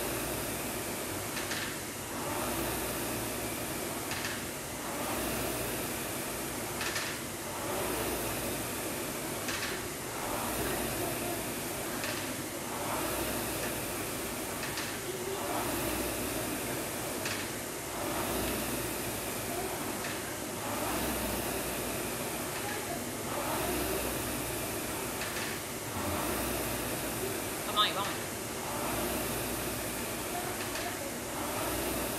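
Air-resistance rowing machine being rowed at a steady pace: the fan flywheel whooshes up with each drive and eases off on the recovery, about one stroke every two and a half seconds. There is one brief sharp click or knock near the end.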